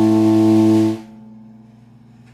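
Telecaster-style electric guitar through a Fender Super Sonic 60 amp: a held note or chord sustains steadily, then is cut off abruptly about a second in, leaving only faint amp hum and hiss.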